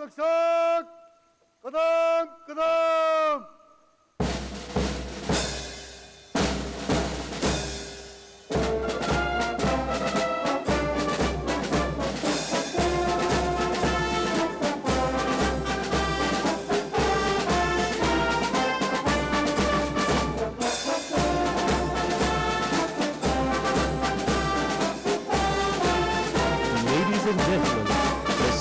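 A trumpet sounds a short call of three held notes. Slow, heavy drum beats about one a second then come in, and from about eight seconds in a full brass-and-drum piece plays on with a steady beat.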